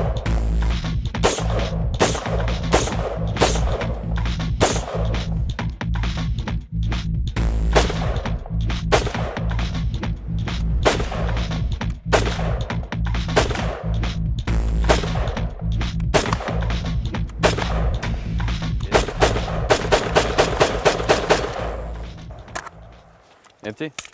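An AR-15 rifle built on a 3D-printed lower receiver fires single shots, roughly one a second, then a fast run of about six shots a second before the shooting stops near the end. The firing ends when the printed receiver breaks after about 27 rounds.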